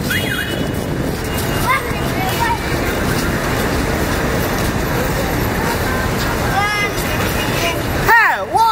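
Steady roadside traffic noise, with faint scattered voices of people nearby.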